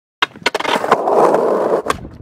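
Skateboard sounds: a couple of sharp deck clacks, then wheels rolling on rough pavement for about a second, ending in another sharp clack.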